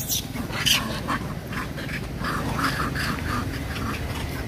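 Long-tailed macaques calling in a fight: a sharp, shrill cry under a second in, then a run of short squeals between about two and three and a half seconds.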